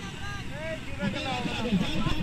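Several motorcycle engines running at low revs as the bikes creep forward slowly, with people shouting over them.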